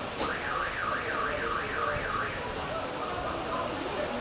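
A sharp click, then an electronic alarm-like tone warbling up and down about three times a second for about two seconds.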